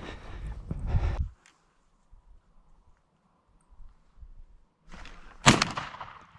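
A brief rustling handling noise at the start, then near quiet, then one sharp, loud bang about five and a half seconds in that dies away over about a second.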